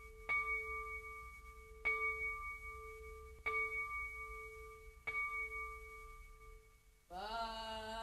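A bell struck four times, about every second and a half, each strike ringing on at the same pitch and fading before the next. About seven seconds in, voices start singing.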